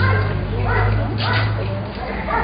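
A dog in the background giving a few short whining calls over a steady low hum.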